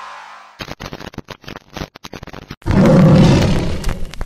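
Sound effects for a logo animation. Electronic music fades out, then there is glitchy static crackle, and about three seconds in a loud tiger-roar effect lasts about a second before the crackle returns.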